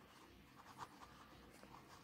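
Faint scratching of a pen writing on paper, in a few short strokes.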